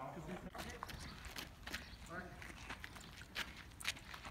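Distant voices of several people calling to each other outdoors, with scattered short knocks and scuffs.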